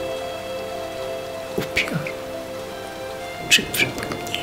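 Steady rain added to the soundtrack over a sustained musical drone, with a few sharp taps standing out, two near the middle and two near the end.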